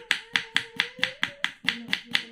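Kitchen knife chopping shallots on a wooden cutting board, the blade striking the board in quick, even strokes, about four to five a second.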